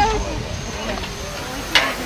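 Low murmur of people's voices, with one sharp click near the end.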